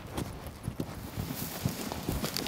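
Planting shovel stabbing into the ground and scraping through dry matted grass, with footsteps crunching in the grass: a string of irregular knocks and rustles as a slit is opened for a tree seedling.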